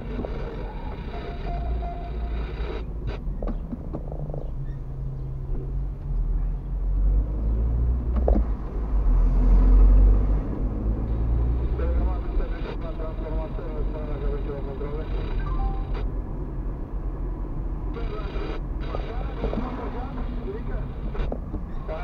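Car engine and road rumble heard from inside the cabin while driving slowly along a street, swelling louder around ten seconds in.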